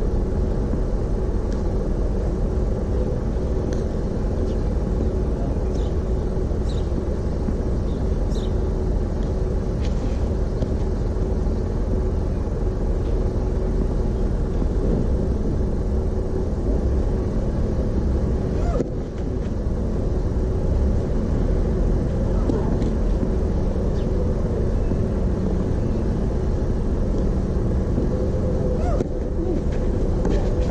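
A steady low outdoor rumble with a few faint tennis ball strikes, spaced a second or two apart, from a rally on a clay court in the first ten seconds or so.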